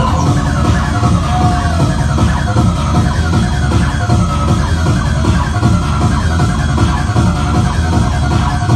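Electronic acid techno with a steady heavy bass and a repeating synth line that dips in pitch about twice a second.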